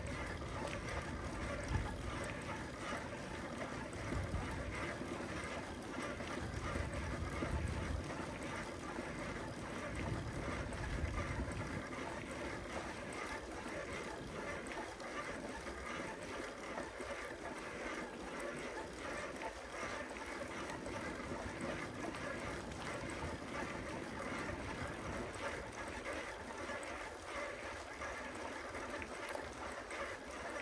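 Steady rushing noise of riding a bicycle: tyres rolling on pavement and air moving past the microphone, with low wind buffeting during roughly the first twelve seconds.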